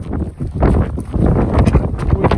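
Strong gusting wind buffeting the microphone: a loud, rumbling noise that rises and falls.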